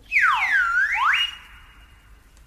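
An electronic whistle-like tone swoops down in pitch and straight back up, with echoing copies trailing it. It then holds a high steady note that drops to a faint tail about a second and a half in.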